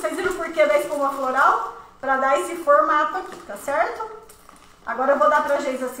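A woman speaking, in three stretches with short pauses between them.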